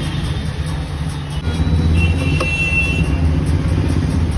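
Steady low rumble of an idling vehicle engine, a little stronger after about a second and a half, with one short click about two and a half seconds in.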